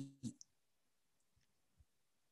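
Near silence after the last word trails off at the start, then a couple of faint clicks from a computer mouse as the presentation slide is advanced.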